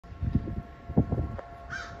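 A crow caws once near the end, a short harsh call. Before it come a few low thumps, with a faint steady hum underneath.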